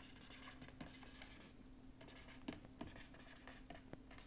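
Faint scratching and occasional light taps of a stylus writing on a tablet, stroke by stroke, over a low steady hum.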